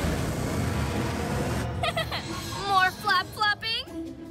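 Cartoon sound effect of a flying vehicle's rocket thrusters: a steady rushing rumble that stops after under two seconds. Short voice sounds over background music follow.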